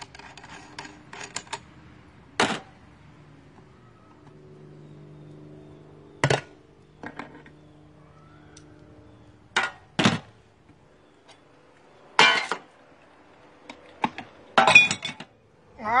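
Metal parts of an electric meat grinder's head (feed tube, auger, cutting plate) clanking against each other and against a stainless steel pan as the grinder is taken apart. Sharp single clanks a few seconds apart, with a quick cluster near the end.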